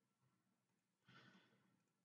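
Near silence, with one faint exhaled breath or sigh about a second in, lasting about half a second.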